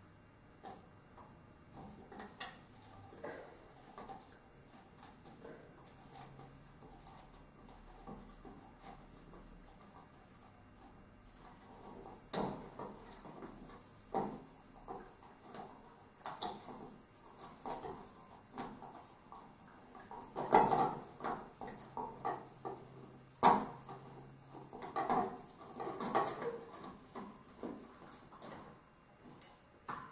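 Faint, scattered clicks, scrapes and small rattles of an old hanging ceiling light being handled as the thumb screws on its ceiling cover plate are turned off and the plate is lowered. Louder separate knocks and rattles come in the second half.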